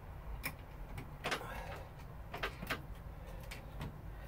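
Small hardware being fitted to a metal rear-view mirror bracket: a screw, lock washer and nut handled and turned with a screwdriver, giving a few scattered light metal clicks over a low steady hum.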